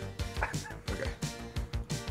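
A man making a few short yipping, dog-like noises with his voice over background music with a steady beat.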